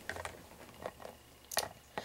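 A few light clicks and taps of small plastic Littlest Pet Shop figurines being handled and set down on a tabletop, the clearest about one and a half seconds in.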